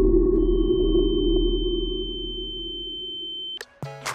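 Edited-in transition sound effect: a dense low rumble that slowly fades, with one steady high tone held over it for about three seconds, both cutting off suddenly near the end.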